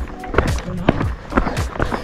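Running footsteps on bare rock, a string of short irregular impacts, over background music.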